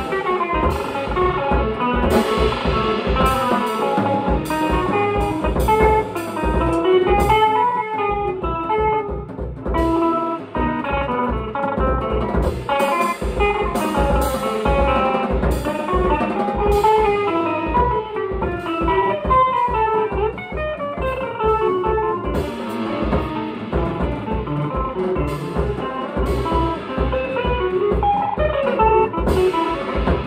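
Live duo of electric guitar and drum kit: a hollow-body electric guitar played through a small amp runs a busy line of single notes and chords over drums and cymbals.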